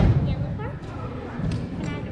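A heavy low thud right at the start, with a brief low rumble after it, and a second, softer thud about one and a half seconds in.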